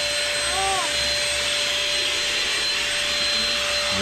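Handheld vacuum cleaner with a hose attachment running steadily: an even rush of air with a constant motor whine.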